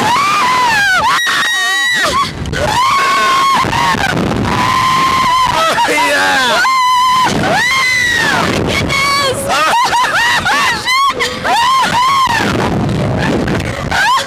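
Two riders screaming and whooping as they are flung up and down on a slingshot (reverse-bungee) ride. Long, high screams follow one another almost without a break, some held level and some rising and falling.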